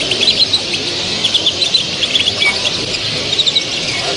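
Caged show finches (goldfinches, canaries and their hybrids) chirping, with many short, high notes overlapping and scattered through the whole stretch.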